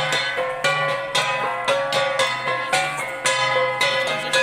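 Cordillera gangsa flat gongs struck by dancers in a steady interlocking beat, about two strikes a second with lighter strokes between, each ringing on with a metallic tone.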